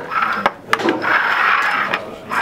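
Small cups knocked down and then slid and scraped across a wooden tabletop as they are shuffled. Two sharp knocks come in the first second, followed by about a second of continuous scraping.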